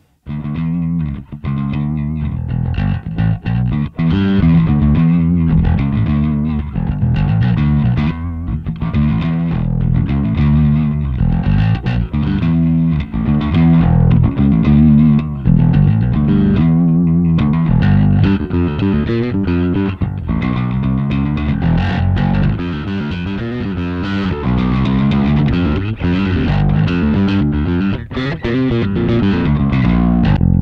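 Electric bass guitar playing a riff through channel B of a Two Notes Le Bass dual-channel tube preamp pedal, with a distorted tone and the pedal's speaker emulation on, heard through a PA cabinet.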